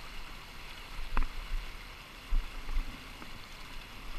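River water rushing steadily over a shallow rocky riffle, with a few low rumbles on the microphone and one short click about a second in.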